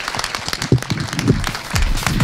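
Audience applauding, a dense patter of many hands clapping. Music comes in near the end.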